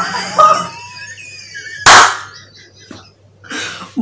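A man laughing, then about two seconds in a sudden loud rush of noise that dies away within half a second.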